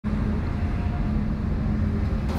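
Steady low hum of a car's engine and tyres heard from inside the cabin while driving.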